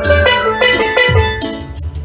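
Steel pan played with mallets: a quick melody of bright, ringing struck notes, with a drum beat thumping underneath.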